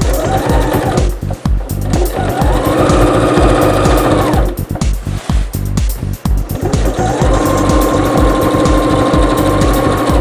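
Electric domestic sewing machine stitching in three runs, each speeding up to a steady whine and then winding down, over background music with a steady beat.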